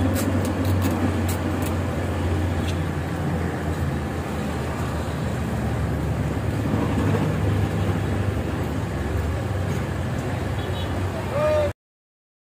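Street traffic noise: a steady low rumble of motor vehicles running past, with indistinct voices mixed in. The sound cuts off suddenly near the end.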